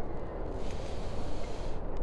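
Steady background noise with a low rumble and no clear ball strikes; a soft hiss rises over it about half a second in and fades just before the end.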